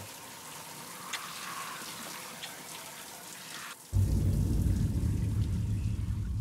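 Shower spray hissing steadily. About four seconds in it drops away and a loud, steady deep rumble comes in and holds.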